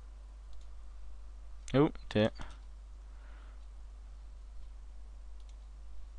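A few faint, scattered clicks of a computer mouse over a low, steady hum.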